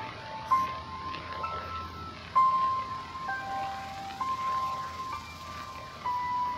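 A simple melody of plain electronic notes, played one at a time and each held for about a second, in the style of an ice-cream-truck jingle.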